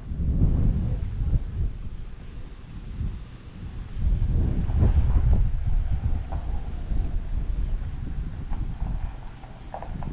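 Wind buffeting the camera microphone in gusts, a low rumble that swells in the first second and again from about four to six seconds in.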